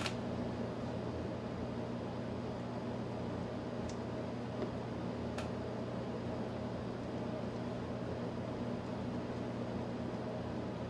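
Steady low hum of a fan or electrical equipment with a light hiss, and two faint clicks of small plastic model parts being handled, about four and five and a half seconds in.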